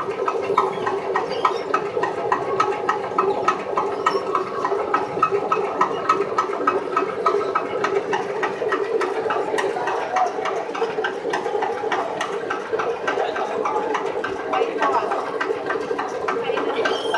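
Fabric inspection machine running steadily, drawing lining fabric off the roll past a wheeled yard counter: a constant mechanical hum with rapid, even clicking throughout.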